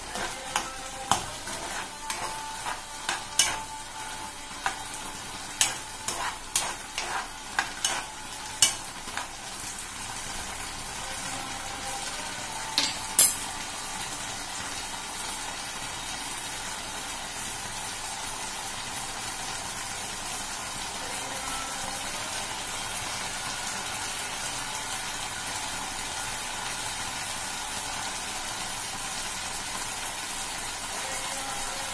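Chickpeas frying in a kadai on a gas flame, with a spatula knocking and scraping against the pan in a string of sharp clicks over the first nine seconds and twice more near the middle, then a steady sizzle.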